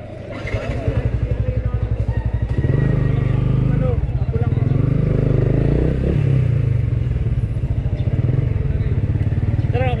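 Motor scooter engine running at a slow crawl with a steady low putter, growing louder over the first few seconds as the throttle opens, then holding steady.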